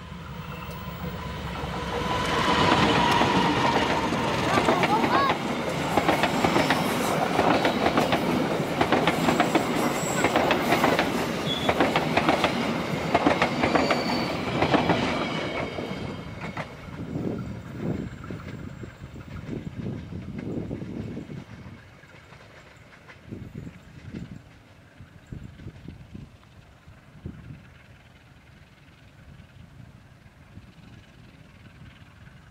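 A KAI diesel locomotive hauling passenger coaches passes close by. Engine and wheel noise build over the first couple of seconds, stay loud for about twelve seconds, then fade. Separate clacks of wheels over the rail joints are left near the end.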